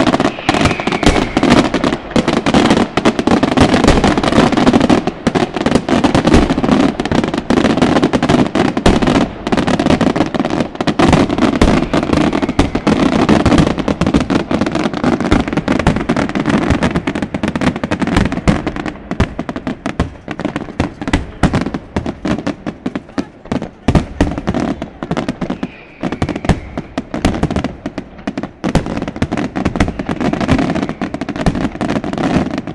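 A loud fireworks barrage: aerial shells bursting and crackling in rapid succession, reports overlapping too fast to count, thinning slightly in the later seconds.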